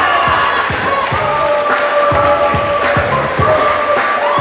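Crowd in a sports hall cheering and shouting as an MMA fight is stopped, with music playing over it; long held calls and frequent low thumps run through it.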